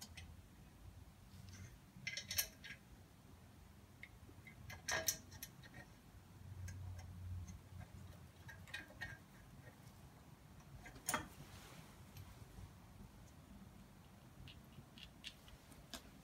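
Small metal parts clinking as a muffler and its bolts and lock washers are fitted to an exhaust manifold flange by hand: a few scattered light clicks and taps, the sharpest about five and eleven seconds in.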